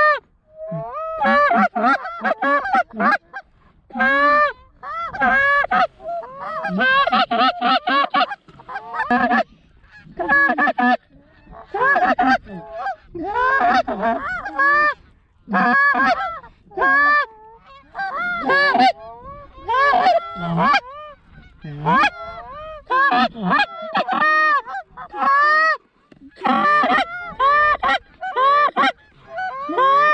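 Canada goose honks and clucks, many short calls a second and often overlapping, with a brief lull late on.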